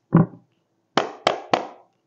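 Deck of tarot cards being shuffled by hand: a soft low thump, then three sharp card slaps in quick succession, about a quarter second apart.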